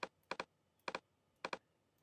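Computer mouse button clicking as checkboxes are ticked: a handful of short, sharp clicks about half a second apart, one of them a quick double click, with near silence between.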